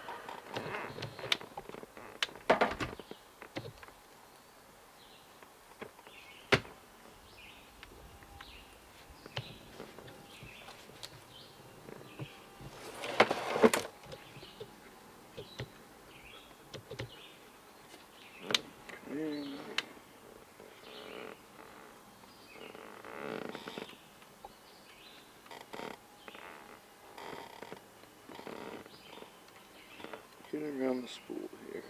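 A trolling rod and line-counter reel being handled: scattered clicks and knocks, with one louder rustling burst about halfway through. Birds chirp in the background.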